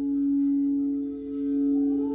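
Frosted quartz crystal singing bowls played with mallets, several bowls sounding together in long steady tones whose loudness swells and dips slowly. Near the end another, higher bowl tone slides in and joins them.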